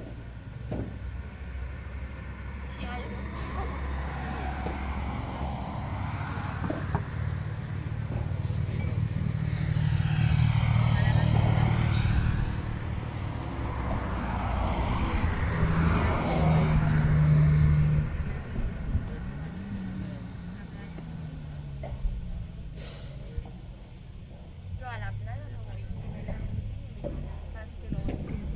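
A motor vehicle passing close by, its engine rumble swelling and fading twice, near the middle and about two-thirds through, with rising and falling pitch as it goes past. A few sharp knocks of a padel ball on rackets and glass cut through it.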